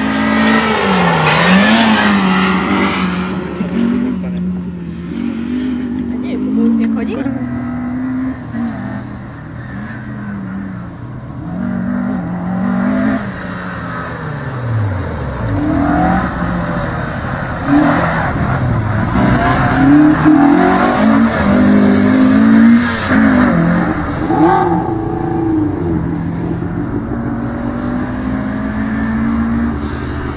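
Peugeot 106 Rallye's four-cylinder petrol engine revving hard and easing off again and again as the car is driven through a cone slalom, its note climbing and dropping with each acceleration and lift, with one long falling sweep about halfway through.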